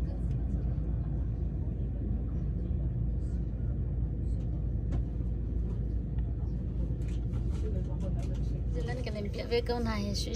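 Steady low rumble of a moving train, heard from inside the carriage. Voices start near the end.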